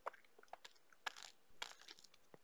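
A few faint, short sucking and clicking sounds of someone sipping a drink through a straw from a plastic cup.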